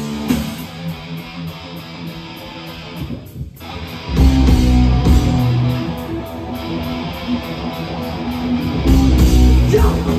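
Live heavy metal band playing: a quieter, sparser electric-guitar passage for the first few seconds, then the full band with distorted guitars, bass and drums comes in loud about four seconds in.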